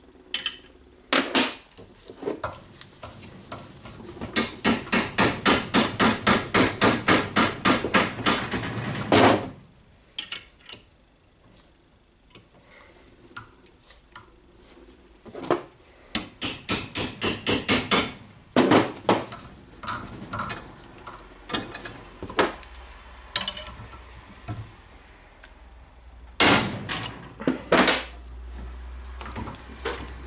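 Steel hammer striking the arm of an Allen key fitted in a drill chuck held in a bench vise, knocking the screw-on chuck loose from its shaft. Metal-on-metal blows come in quick runs of about three a second, with single knocks in between.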